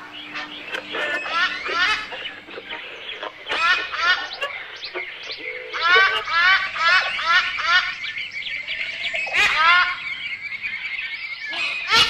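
Recorded jungle ambience of birds calling: many short, rising squawks, in quick runs of about three a second in the middle, with a thin steady high trill near the end.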